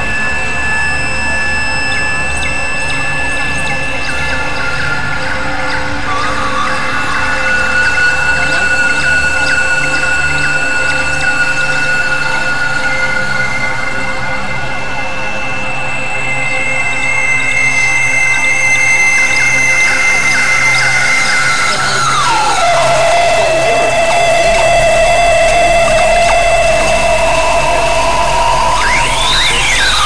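Experimental synthesizer drone music from a Novation Supernova II and Korg microKorg XL: several high tones held over a low pulsing drone. About two-thirds of the way through, one tone slides down in pitch, and near the end there is a quick rising and falling sweep.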